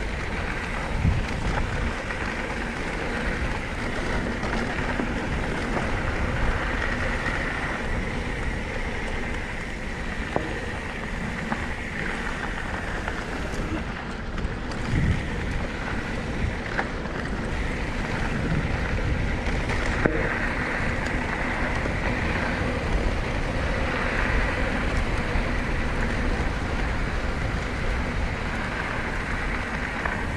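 Mountain bike ridden down a dirt singletrack: steady tyre rumble on the dirt and wind buffeting the microphone, with a few sharp knocks and rattles from the bike over bumps.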